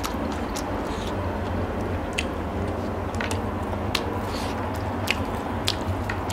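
Close-miked eating sounds: a person chewing and smacking food by hand, with scattered sharp wet clicks from the mouth and lips. A steady low hum runs underneath.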